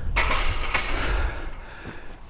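Wind buffeting the microphone: a rumbling, hissing noise that eases off after about a second and a half.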